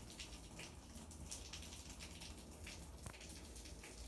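Near silence: faint room tone with a low hum and light scattered crackles, and no distinct sound.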